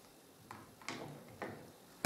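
Three faint, light clicks and taps of rigid plastic strips being handled and set down on a workbench, about half a second apart.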